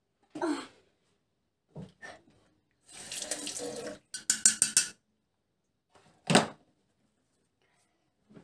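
Water from a bathroom tap splashing in the sink in separate short bursts, the longest run from about three to five seconds in and one sharp splash a little past six seconds, as water is splashed or rinsed at the basin.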